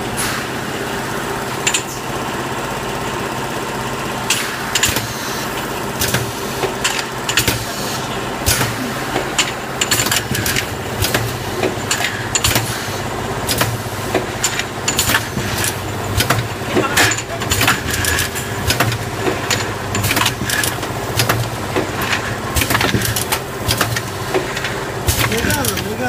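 Automatic rotary bottle filling and capping machine running: a steady motor hum under frequent sharp clicks and clacks as bottles and caps move through the star wheel and cap feed. The clicking grows busier from about four seconds in.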